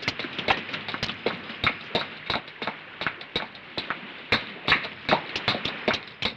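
Quick footsteps hurrying up a flight of stairs, about three or four steps a second.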